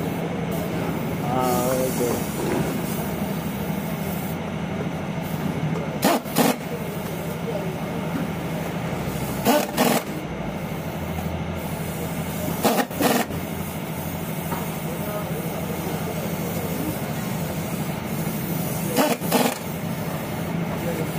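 Cordless impact wrench hammering briefly on a scooter's rear wheel nuts, four short bursts several seconds apart, over a steady background hum.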